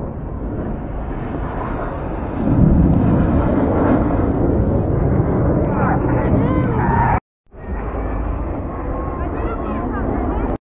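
Red Arrows BAE Hawk T1 jets flying past, a loud jet roar that swells about two and a half seconds in, with crowd voices over it. The sound breaks off for a moment about seven seconds in, then the roar carries on.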